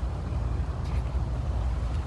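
Steady low outdoor rumble, the kind made by wind on the microphone or distant traffic. About a second in there is a faint rustle as a picture-book page is turned.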